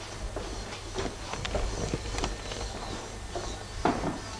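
Footsteps on a hard floor, a knock or scuff roughly every half second, the loudest near the end, over a steady low hum.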